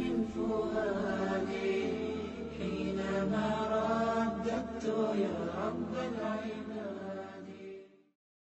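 Chanted vocal outro, nasheed-style, with long held sung notes over a steady low hum. It fades out at the very end.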